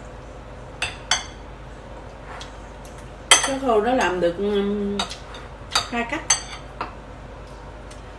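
Metal fork and spoon clinking against a ceramic bowl while eating: about seven short, sharp clinks, a few close together in the second half. A person's voice sounds briefly in the middle, louder than the clinks.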